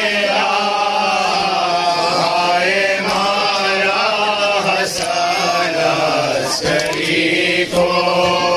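Male voices chanting a nauha, an Urdu mourning lament, in long drawn-out sung lines over a steady low hum. A few sharp knocks come through in the second half.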